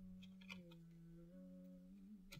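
A woman humming quietly to herself, three long held notes that step down and back up in pitch, with a few faint clicks of a card deck being handled.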